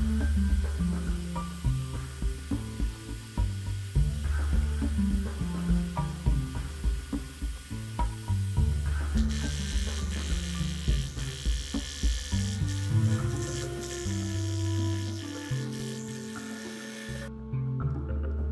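Upbeat disco-style background music with a steady bass line. About halfway through, a scroll saw runs under the music, its blade cutting a thin board, and the saw sound cuts off suddenly near the end.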